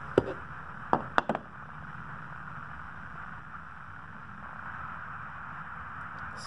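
A few light clicks and knocks in the first second and a half as a tinted glass sample is set into the slot of a handheld solar transmission meter, then a steady low background hiss.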